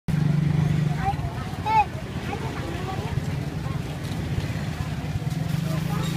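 Street ambience: a motor vehicle engine running with a steady low hum, loudest in the first second and again near the end, with people talking faintly in the background.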